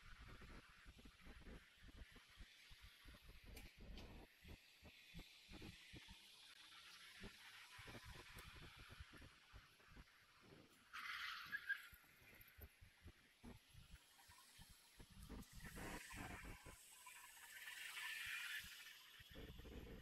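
Quiet street ambience at a very low level, with faint footsteps throughout. A louder rushing noise rises in the last few seconds as a motor scooter passes close by.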